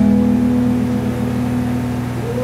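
A live band holds the final chord of a song: steady low notes ring on and slowly settle, with no singing.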